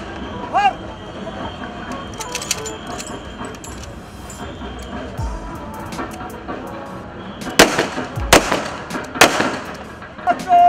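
Three rifle shots fired into the air as a police ceremonial gun salute, sharp cracks in quick succession near the end, under steady music and crowd noise.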